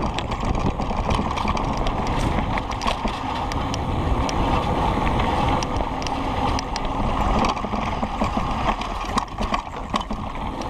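Wind buffeting the camera and the rumble of a Kona Process 134 mountain bike's tyres rolling over a dirt trail, with many small clicks and rattles from the bike over the rough ground.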